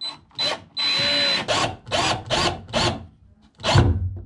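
An 18-volt cordless drill drives screws to fix a metal drawer runner to a plywood cabinet in short trigger bursts. One longer run comes about a second in, then a string of quick pulses, each rising and falling in pitch as the motor spins up and stops.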